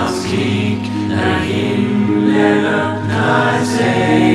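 A choir of layered voices singing slow, long-held chords in a Nordic fantasy folk song, the phrases changing about once a second.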